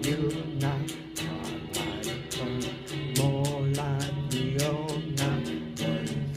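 A man singing over guitar music, his voice wavering in pitch, with a steady beat of about four sharp strokes a second.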